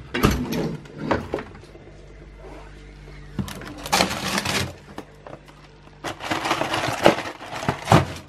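A freezer drawer being handled while a hand rummages through frozen food packets and a cardboard ice lolly box: rustling, crinkling and knocking in three bursts, over a steady low hum.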